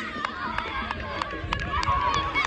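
Children's voices calling out during a youth football match, with scattered sharp clicks and taps.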